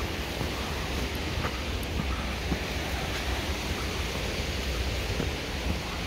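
Wind on the microphone: a steady rushing noise with a low rumble, and faint scattered ticks and rustles from footsteps and brushing grass on the trail.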